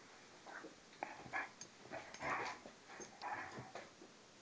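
A Hungarian vizsla and a German shorthaired pointer play-fighting, giving a string of short growls, starting about half a second in and stopping just before the end. A few sharp clicks are mixed in among the growls.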